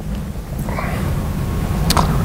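Low rumbling handling noise, growing louder, as people lift a patient on a plastic scoop stretcher off the floor, with one sharp click near the end.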